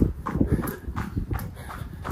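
A runner's footfalls on pavement in a quick, even rhythm, with hard breathing between the steps.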